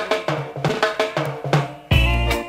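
Drum intro of a rock steady reggae record restarted on a sound system: a run of snare and kick drum strokes, with the full band and heavy bass line coming in near the end.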